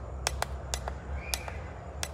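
Buttons on a FNIRSI SWM-10 handheld battery spot welder clicking as its settings menu is scrolled: a string of small sharp clicks, several a second, with a brief faint high tone about halfway through, over a steady low hum.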